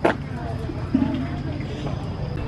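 A sharp click, then a steady low rumble under faint, indistinct voices of people in the background.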